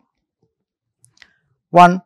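Near silence in a pause of speech, broken by two faint clicks a little after a second in, then a voice saying the single word "one".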